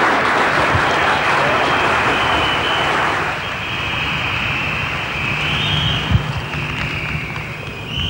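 Studio audience applauding and cheering as a song ends, strongest for the first three seconds and then easing off.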